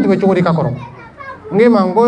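A man speaking into a microphone, with a short pause about a second in.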